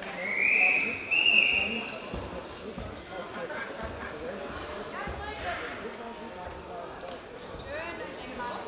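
A referee's whistle blown as two high-pitched blasts, each under a second, in the first two seconds, signalling the start of a wrestling bout. Voices murmur in the hall behind it.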